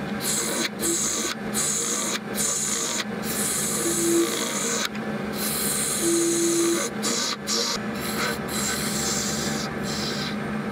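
Turning gouge cutting a cast epoxy resin blank spinning on a lathe: a continuous scraping hiss, broken by several brief breaks as the tool lifts, over the steady hum of the lathe.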